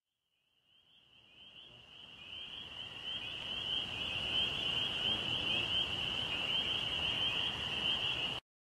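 A steady, high-pitched chirring chorus of calling animals, over a soft rushing background, fading in over the first few seconds.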